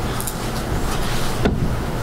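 Steady room background noise with a low hum, broken by a single short knock about one and a half seconds in.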